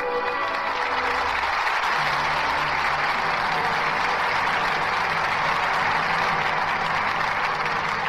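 Studio audience applauding steadily over the orchestra's closing music at the end of a radio play's act.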